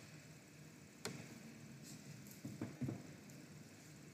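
Faint clicks of a computer mouse: one sharp click about a second in, then a couple of softer ones near three seconds, over quiet room hiss.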